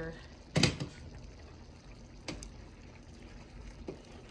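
Pot of beef stroganoff Hamburger Helper simmering on a stove as it is stirred. There is a sharp metal clatter about half a second in and lighter clinks later.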